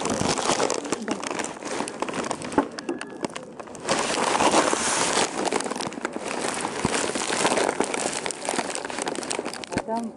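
Loud rustling and crinkling close to the microphone, with scattered sharp clicks and muffled voices behind.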